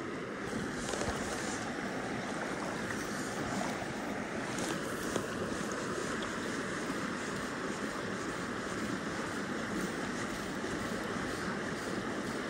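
Small creek flowing, a steady rush of water over shallow riffles.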